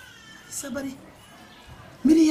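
A cat meowing once, a short call that rises and falls in pitch, followed about half a second in by a brief vocal sound.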